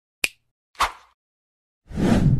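Edited-in intro sound effects: a sharp snap-like click, a second hit with a short fading tail, then a louder, deeper burst starting just before the end.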